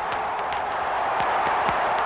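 Large crowd applauding and cheering, a dense steady noise with many separate hand claps standing out, rising slightly in level.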